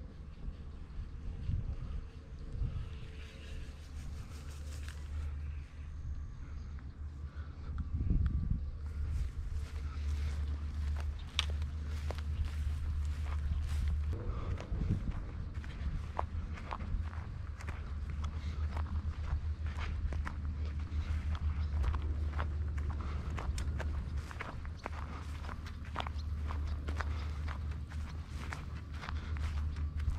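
Footsteps crunching on a gravel path, falling into a steady walking rhythm from about nine seconds in, over a steady low rumble.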